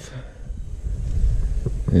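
Low wind rumble on the microphone, swelling from about half a second in.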